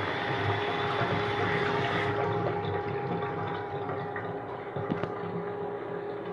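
Water running under tap pressure through a miniature clay model toilet and swirling in its bowl: a steady rush with a constant whine underneath, and the hiss eases about two seconds in.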